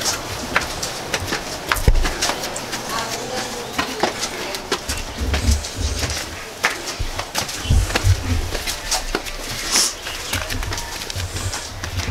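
Flip-flop footsteps slapping and scuffing on concrete steps as people climb a stairway, in an irregular run of short clicks, with low bumps mixed in.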